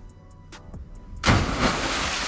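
A person plunging into canal water after a bridge jump: a sudden loud splash a little over a second in, with the rush of spray running on after it.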